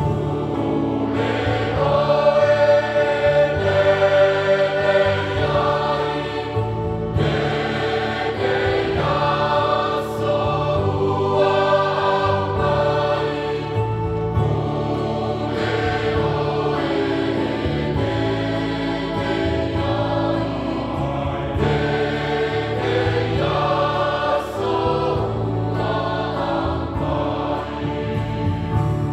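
A mixed choir of men's and women's voices singing a Samoan hymn in parts, accompanied by a Yamaha electronic keyboard.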